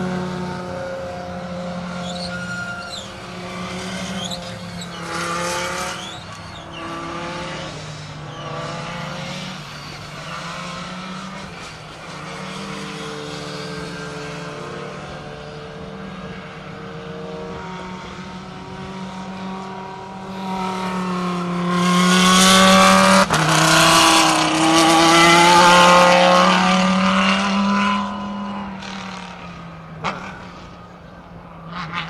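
Race car engines running as cars lap the circuit, the pitch shifting with the revs. The sound swells to its loudest from about 21 to 28 seconds in as cars pass close by, with the engine note rising and falling, then fades.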